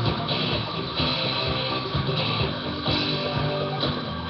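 A live band playing, with guitar over a steady drum beat. The recording is dull, with the treble cut off.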